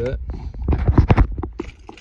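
A quick cluster of knocks and rubbing from something being handled close to the microphone, about half a second to a second and a half in.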